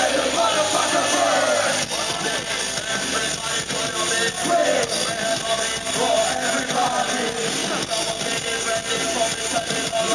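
Live electronic band music with vocalists singing into microphones over synth and keyboard backing, steady and loud throughout.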